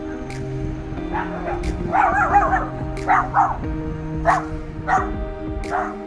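A dog barking repeatedly in short barks, the loudest cluster about two seconds in.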